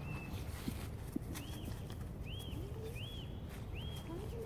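A bird chirping four times, each chirp rising and falling, over a low steady outdoor rumble, with two soft knocks about a second in.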